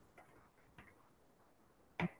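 Near silence, with a few faint, brief ticks.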